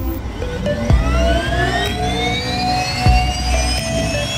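Turbine whine of a Pilatus PC-12's Pratt & Whitney PT6 turboprop, several tones rising steadily in pitch as the engine spools up, over music with deep beats about a second in and again near three seconds.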